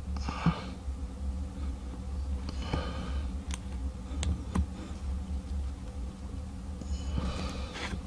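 Needle-nose pliers crimping a small aluminum retaining ring into a groove on a starter solenoid plunger, giving a few faint metal clicks and soft rustles over a low steady hum.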